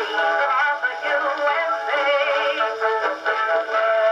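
An Edison Blue Amberol cylinder record playing on an Edison cylinder phonograph: a song with band accompaniment, in a thin tone with no bass and little treble.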